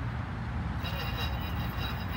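Wind buffeting the microphone outdoors, a steady low rumble, with faint high thin tones coming back in a little under a second in.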